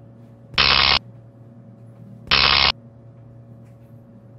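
Electrical sound effect: a steady low hum, broken twice by short, loud electric buzzes, each under half a second and about two seconds apart.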